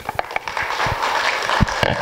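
Audience applauding. The clapping builds up over the first half second and then holds as a dense patter.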